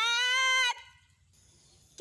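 A high-pitched, drawn-out vocal call held on one pitch for under a second, then silence. A second similar call starts right at the end.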